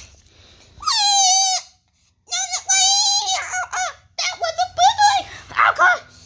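A child's high-pitched, warbling squeals and shrieks, a long one about a second in and a string of shorter ones after it: play-fight noises made while bashing stuffed toys together.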